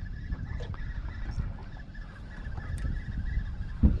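Low rumbling wind and water noise around a small aluminium boat, with a faint steady high whine through the first half and one sharp thump near the end.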